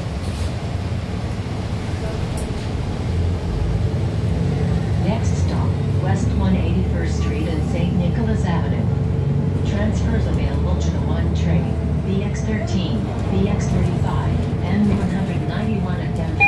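Cabin noise inside a 2020 Nova Bus LFS hybrid-electric city bus pulling away from a stop and riding: a steady low drivetrain and road rumble that grows louder about three seconds in, with scattered rattles and clicks.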